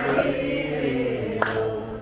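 A group of devotees singing a devotional song (a Mataji bhajan) together, with one sharp click about one and a half seconds in.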